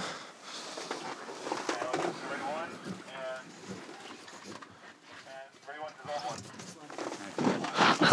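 Low, indistinct talk of several people close by, with no clear words, broken by short pauses.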